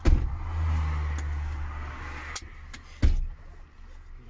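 Car running on the road, heard from inside the cabin: a loud low rumble of road and wind noise starts abruptly and runs for over two seconds. A click follows, then one heavy thump about three seconds in.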